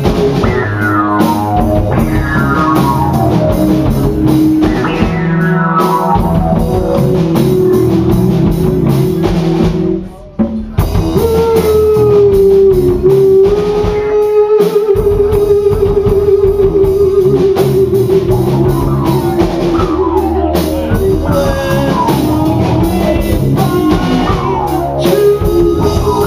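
Live rock band playing a song, drums and band under repeated falling slides in pitch. The music cuts out briefly about ten seconds in, then comes back with a long held, wavering note over the band.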